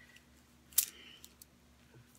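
A metal cuff bracelet being moved onto a wrist: one sharp click a little under a second in, followed by a few lighter ticks.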